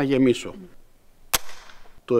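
The lock of a Cretan flintlock musket (anichato) dry-fired without powder: the flint-holding cock snaps forward onto the steel frizzen and flips it open. One sharp metallic snap a little past halfway, with a short ringing tail.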